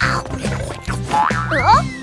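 Bouncy children's cartoon background music with a steady bass beat, and near the end a cartoon sound effect of quick sliding pitch sweeps followed by a long falling whistle.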